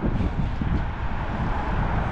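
Wind buffeting the microphone in an uneven low rumble, mixed with the sound of street traffic.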